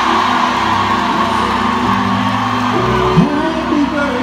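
Live band playing long sustained chords, with whoops and shouts from the audience over it; a short upward sliding note comes in about three seconds in.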